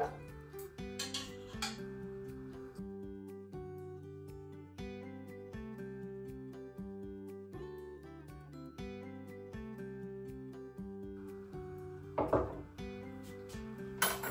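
Background music of plucked, guitar-like notes. A few short clinks of metal tongs against the pot and carving board, the loudest cluster about twelve seconds in.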